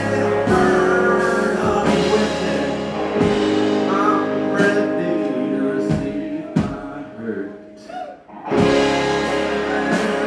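Live rock band playing with electric guitar and a sung lead vocal. The band thins out and drops almost to nothing about eight seconds in, then comes back in at full strength.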